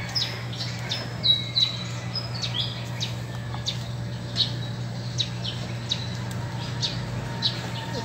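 Small birds chirping in many short, high calls, some sliding downward, over a steady low hum.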